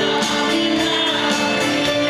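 Live pop-rock band playing a slow song with acoustic guitar and drums under a long-held sung melody, recorded from within the audience.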